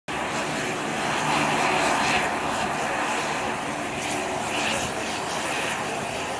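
Twin-engine turboprop airliner taxiing, its engines and propellers running with a steady drone.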